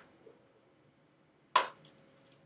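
A single sharp click, about one and a half seconds in, over a faint steady hum.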